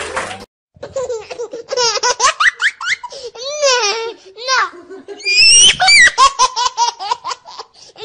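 High-pitched human laughter, a run of quick giggling bursts. It rises to its loudest, with squealing high notes, a little past halfway.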